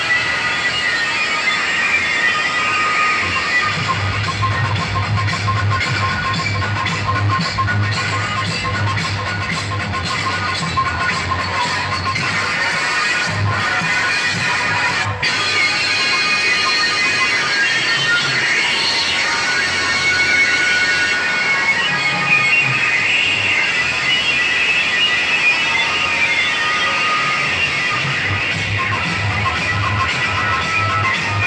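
Loud music from a DJ sound system of stacked speaker cabinets, with heavy, pulsing bass and a very brief break about halfway.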